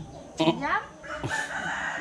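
A rooster crowing once, starting about half a second in, alongside a woman's voice.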